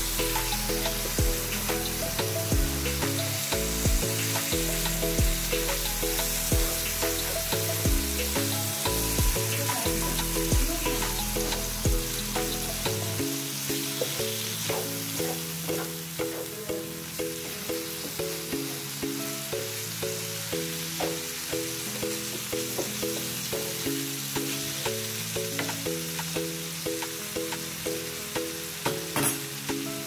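Chicken liver frying in a pan with a steady sizzle, stirred with a wooden spoon, under background music whose low bass notes drop out about halfway through.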